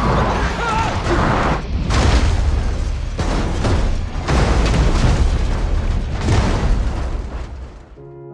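Rally car crashing off a gravel road and rolling over: a run of heavy crashing impacts, roughly one a second, over a loud rush of noise.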